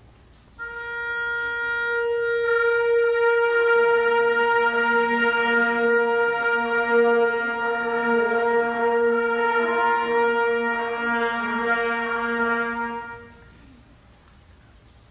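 A symphonic wind band holding a long, loud sustained chord, mostly brass with woodwinds. It enters about half a second in, a lower note joins a few seconds later, and the band releases together about a second before the end.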